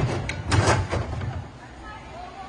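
Gymnast's round-off entry onto a vault springboard: a couple of quick sharp hits, then the loudest thud of the board about half a second in, fading after.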